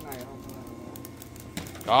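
Faint voices over a steady low hum, then a man speaks loudly near the end.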